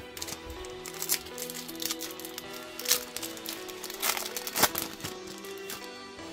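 Soft background music with held notes, over several short crinkles of a foil booster-pack wrapper being handled and torn open.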